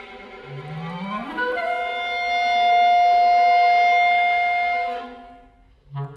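Clarinet in B♭ and viola playing contemporary chamber music. A low note slides upward over about a second into a long, high held note that grows loud, with a sustained lower part beneath it. The sound fades out about five seconds in.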